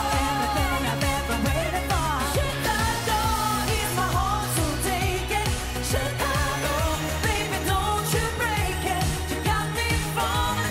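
A female singer performing an upbeat dance-pop song live, her lead vocal over a steady electronic beat.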